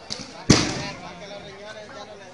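A single loud, sharp bang about half a second in, with a short ringing tail, like a firecracker going off, over crowd chatter.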